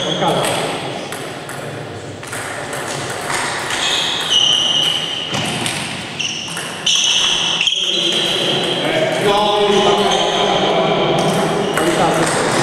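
Table tennis rally: the ball clicking off the table and bats, with repeated short, high squeaks of shoes on the hall floor, in a large echoing hall with voices from elsewhere.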